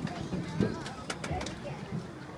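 Stadium crowd murmuring quietly, with faint scattered voices and a few small clicks and knocks.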